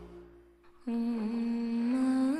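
Soundtrack music fades out. About a second in, a single voice begins a long held humming note that bends slightly in pitch.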